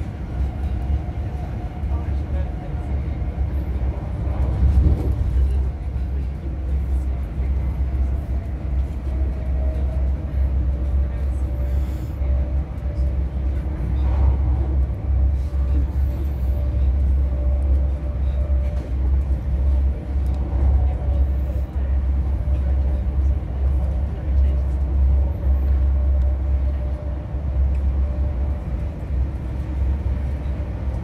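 Inside a High Speed Train coach at speed: a steady low rumble from the wheels and running gear on the track, with no breaks.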